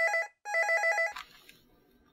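Desk telephone ringing: a warbling electronic double ring, two short trills, that stops about a second in as the receiver is picked up.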